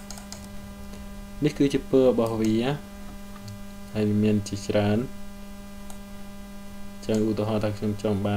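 Steady low electrical mains hum picked up by the recording microphone, with a voice speaking in three short spells over it.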